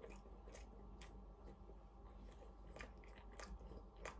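Faint chewing of a mouthful of chicken and mushroom pastry slice with the mouth closed: soft, irregular mouth clicks over a low steady hum.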